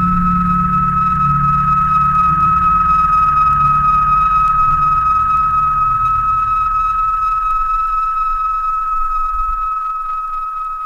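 Ambient experimental electronic music: a steady, high sustained tone held over a low drone, with the low drone fading out near the end.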